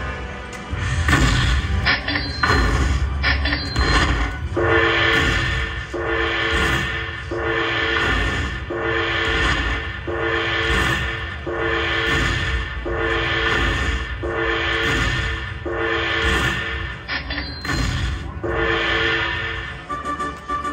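Dragon Link slot machine playing its bonus-win tally music while the win meter counts up the collected bonus values: a repeating chime phrase about every second and a half. A few sharp hits come in the first four seconds, before the phrase settles in.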